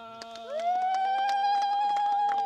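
Two long, steady held tones overlapping. A second, higher note joins about half a second in with a quick upward swoop and holds level, louder than the first.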